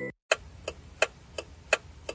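Ticking-clock sound effect for a time skip, with even ticks at about three a second, starting after a brief silence.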